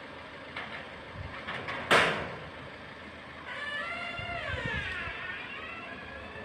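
An ambulance's engine running low as the vehicle moves off slowly, with one sharp bang about two seconds in.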